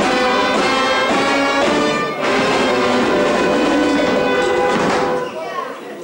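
Brass band playing carnival music in loud held chords, stopping about five seconds in.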